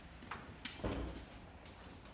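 Knocks and bumps of furniture and a large picture frame being handled in the back of a moving truck, with footsteps on the truck floor; a heavier thump about a second in is the loudest.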